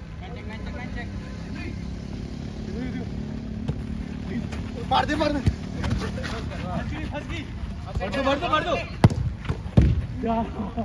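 Football being kicked on an artificial-turf pitch, with two sharp thuds of the ball near the end as a shot is struck, among short shouts from players, over a steady low background rumble.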